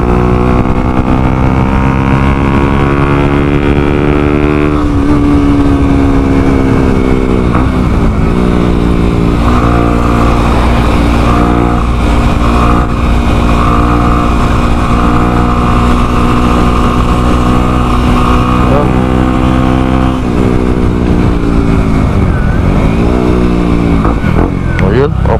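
Motorcycle engine running while under way, heard from the rider's position. Its pitch climbs steadily for the first few seconds, drops suddenly about five seconds in, then twice falls and climbs again as the bike slows and speeds up.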